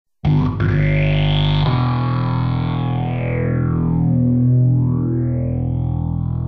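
Music opening with an abrupt start: a sustained, distorted electric guitar drone through an effects unit, with a slow sweep that rises, falls and rises again in pitch.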